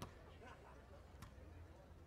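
Faint court sound with two sharp slaps of a beach volleyball being struck: the serve at the start, and the receiving pass a little over a second later.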